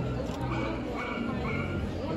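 A dog barking in short, high-pitched calls about every half second, over the murmur of people's voices.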